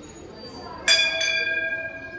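Hanging temple bell struck about a second in, with a second clang just after, then ringing on with a slowly fading metallic tone.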